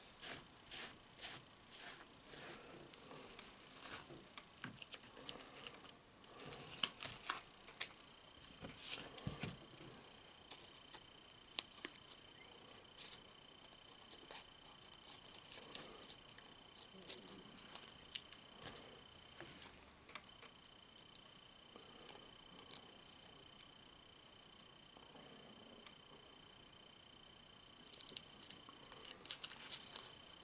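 Close-up chewing and mouth sounds, then scissors snipping at a small plastic packet with crinkling and rustling of the wrapper: a string of small sharp clicks and rustles. A faint steady high tone runs through the second part, breaking off briefly about two-thirds of the way through.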